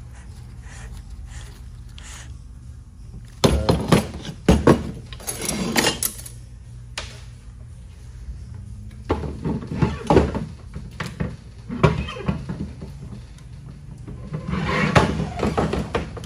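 Metal transmission parts clunking and clattering as a 6L90E's clutch drum and case are handled and set down on a steel workbench. The knocks come in three bunches, about three and a half seconds in, around ten seconds and near the end, over a steady low hum.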